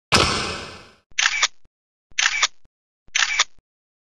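Trailer sound effects: a loud sudden hit that dies away over about a second, then three short, sharp mechanical bursts about a second apart.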